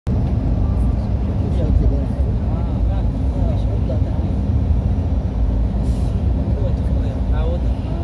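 Steady low drone of an aircraft heard from inside the passenger cabin, with voices talking underneath.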